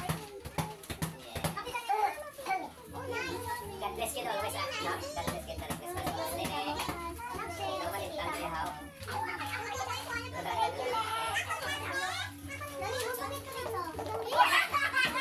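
Lively, overlapping chatter and shouts of a group of adults and children talking at once, with music playing underneath.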